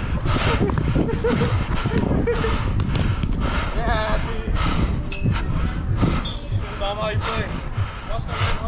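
Players calling out during a five-a-side soccer game, with running footsteps and the thud of the ball being kicked on artificial turf, over a steady low rumble.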